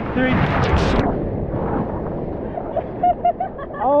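Breaking sea wave crashing over people standing in the surf: a loud rush of surf and splashing water in the first second, settling into churning water. Short bursts of laughter follow near the end.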